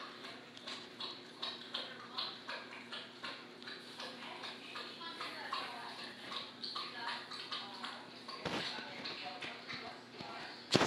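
Dog panting in quick, even breaths, about two to three a second.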